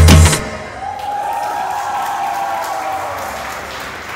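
A salsa track with a heavy bass beat cuts off a moment in, followed by a group of people cheering and applauding.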